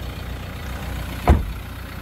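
Steady low hum of the Renault Kadjar's 1.5 dCi diesel engine idling, with a single sharp thump about a second and a quarter in.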